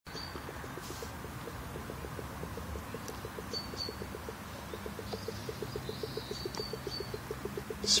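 Hydrogen gas bubbling out of a submerged PVC pipe into a bucket of water, a steady run of blips at about six a second. The gas comes from aluminium soda-can tabs reacting with lye drain cleaner, and the fast bubbling shows the reaction producing gas quickly. A few faint bird chirps sound above it.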